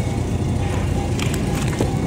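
Steady store background noise with a low hum, and a few faint crackles of plastic as vacuum-packed meat is handled in a refrigerated display case.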